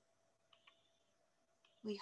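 Near silence: room tone with a faint steady hum and two faint clicks a little past half a second in, then a voice beginning a word near the end.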